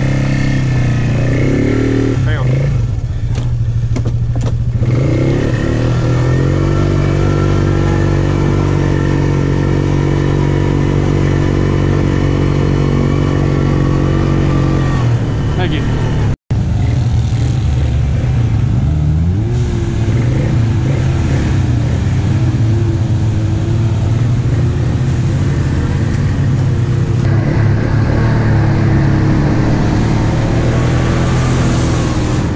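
Polaris Magnum ATV's single-cylinder four-stroke engine running, holding a steady speed for several seconds, then, after a brief break in the sound just past halfway, the engine speed rising and falling while riding along a dirt trail.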